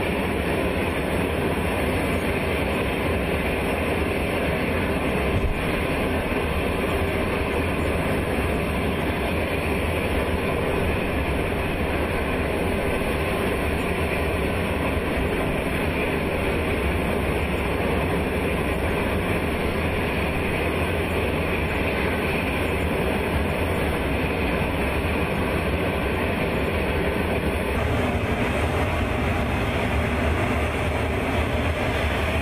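A large military cargo jet running on the ground, a steady, even roar.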